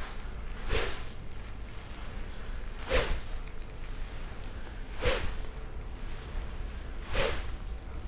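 Jetstick swing-speed training stick swung hard through half-backswing reps: four short whooshes about two seconds apart. Each whoosh marks the fastest point of the swing, out in front of the golfer.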